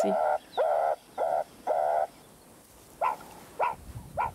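Meerkat high-urgency alarm calls, warning that a predator is close: four calls in quick succession, a short pause, then two brief rising calls near the end.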